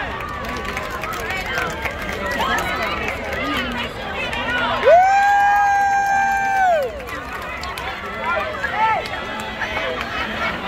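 Spectators in the stands talking and cheering, with one person close by letting out a long, high "woo" of about two seconds halfway through that rises at the start and drops off at the end.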